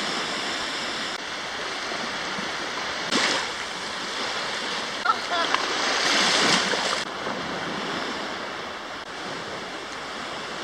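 Small waves lapping and washing up onto a sandy beach: a steady surf hiss, with louder swashes about three seconds in and again around six to seven seconds.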